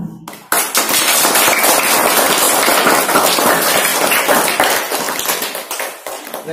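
Hall of children applauding: dense, many-handed clapping that starts about half a second in and tails off near the end.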